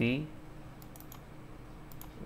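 A few faint computer mouse clicks, a quick cluster about a second in and one more near the end, as a drive is opened in a file dialog; a short end of a spoken word at the very start.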